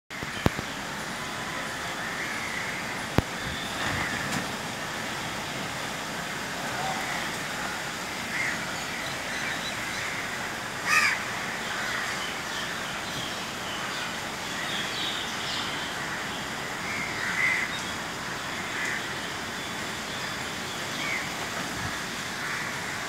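Crows cawing now and then, with one louder call about eleven seconds in, over a steady hiss of rain.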